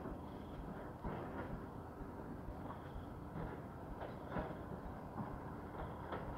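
Faint, steady low rumble of distant road traffic, with a few soft knocks and brief faint high squeaks.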